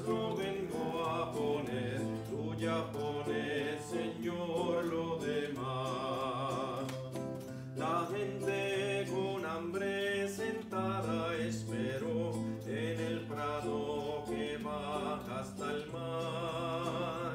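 Male voice singing a hymn to acoustic guitar accompaniment: the offertory hymn of the Mass. The melody runs continuously, with some long held notes sung with vibrato.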